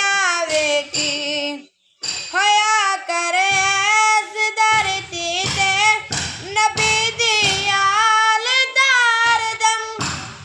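A boy singing a Punjabi devotional kalam, unaccompanied, with long held notes ornamented by quick bends in pitch. The voice breaks off for a moment just before two seconds in.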